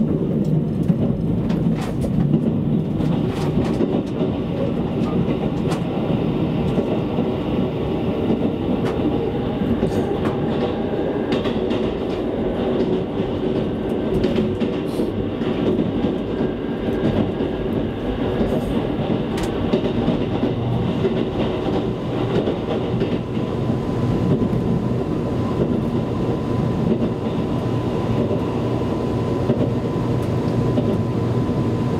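Cabin running noise of a JR Kyushu 787-series electric express train at speed: a steady rumble with scattered light clicks from the wheels on the track. A faint thin steady whine comes in during the last third.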